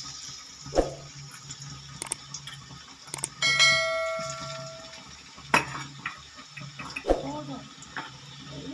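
Steel spoon stirring frying prawns in an aluminium kadai, with several sharp knocks and scrapes against the pan. About three and a half seconds in, a single bell-like ding rings out and fades over about a second and a half, the loudest sound here.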